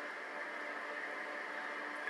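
Steady hiss with a low hum from a television's speaker.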